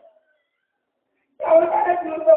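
A man preaching: a brief faint sound at the start, a pause, then a long, high, drawn-out phrase beginning about a second and a half in.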